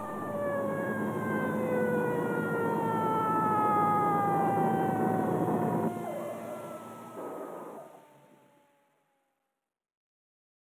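A train whistle sounding one long call over the rumble of a passing train, its pitch sliding slowly downward, fading away and gone by about nine seconds in.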